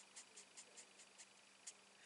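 Faint quick ticks of a grey alcohol marker's small tip flicking short strokes onto cardstock, about five a second. They thin out after about a second, with one last stroke near the end.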